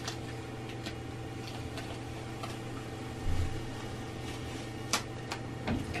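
Quiet handling of a craft knife and thin foil on a cutting mat: a few light clicks and ticks, a soft thump about three seconds in and a sharper click near five seconds, over a steady low hum.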